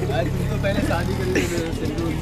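A motor vehicle's engine running with a steady low hum, under faint talk; the hum fades out just after the end.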